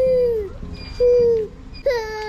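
Toddler crying in short wails, each one falling in pitch, about one a second.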